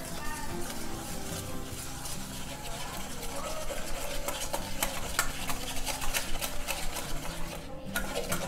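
Wire whisk beating pancake batter in a stainless steel bowl, the wires scraping and clicking against the metal. The strokes grow quicker and louder through the second half.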